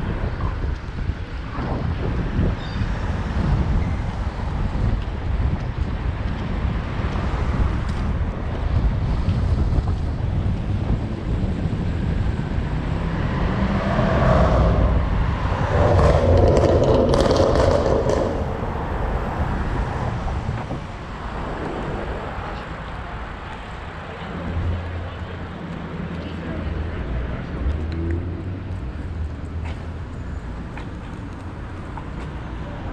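Wind noise on the microphone of a camera riding on a moving bicycle, over city street traffic. The sound swells for a few seconds just past the middle.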